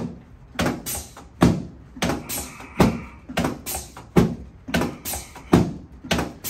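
A series of sharp knocks from a chiropractic drop table, about a dozen at roughly two a second, as the chiropractor thrusts on the patient's chest joints and the table's drop pieces snap down.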